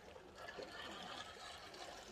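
Small waves lapping and trickling against the seaweed-covered rocks at the water's edge, faint and steady.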